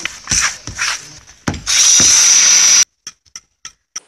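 Tool sounds from laying AAC concrete blocks: two short scraping strokes, then a louder steady noise lasting about a second that cuts off suddenly, followed by a few faint clicks.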